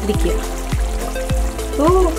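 Background music with a steady beat, a little under two beats a second, and gliding melody notes over it.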